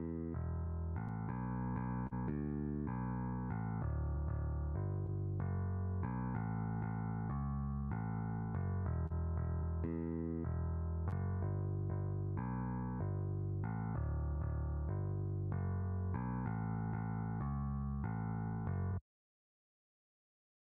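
A bass guitar line played back by notation software's sampled electric bass: a steady, evenly paced run of notes that moves within a simple chord progression, sometimes jumping an octave above the root and leading into each next chord. It stops abruptly about a second before the end.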